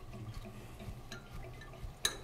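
Faint ticking from a sprinkler riser's gear-operated control valve as its handwheel is turned open, over a low steady hum.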